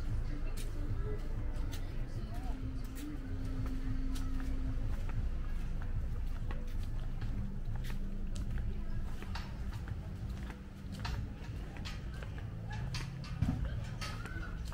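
Outdoor ambience on a walk: a steady low rumble of wind on the microphone, footsteps clicking on paving, and faint distant voices.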